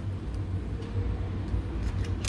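A steady low background rumble, with no one speaking.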